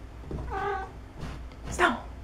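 A domestic cat meowing twice: a short, level call about half a second in, then a louder call near the end that falls in pitch.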